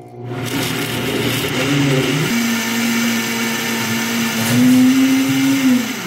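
Countertop blender running at high speed, puréeing blanched coriander leaves with a little of their cooking water into a green paste. The motor pitch wavers for the first two seconds, then holds a steady hum, rising slightly near the end before it winds down.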